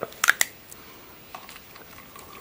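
A few sharp clicks and crackles from a plastic water bottle being handled and tipped, bunched in the first half-second, with one faint click later.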